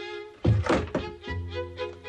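Cartoon soundtrack of light orchestral music with violin. About half a second in comes a loud wooden thunk, followed by a couple of smaller knocks, as a wooden board drops into place.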